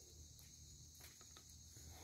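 Near silence: a faint, steady, high-pitched insect chorus in the grass, with a few soft clicks of wire being handled with pliers.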